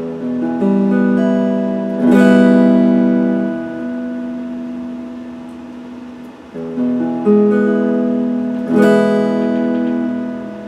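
Electric guitar playing open chords: single notes picked one after another build into a ringing chord, with a full strum about two seconds in and again near the end, each chord left to ring and fade.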